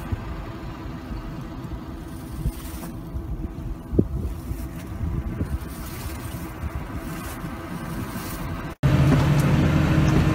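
Wind buffeting the microphone over an open stubble field, an uneven low rumble with a faint steady hum beneath. Near the end it cuts abruptly to a louder tractor engine running steadily, heard from inside the cab.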